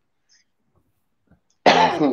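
Silence, then about a second and a half in a man's sudden short vocal burst, loud and falling in pitch.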